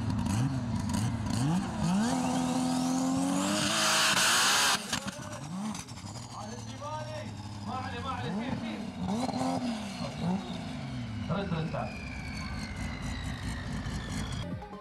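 Modified off-road SUV's engine revved hard, then driven flat out up a steep sand dune, the engine note rising and falling again and again as it climbs. A loud hissing rush lasts about a second, about four seconds in.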